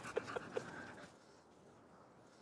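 A Labrador retriever puppy panting: four quick short breaths in the first half-second or so, then only faint background.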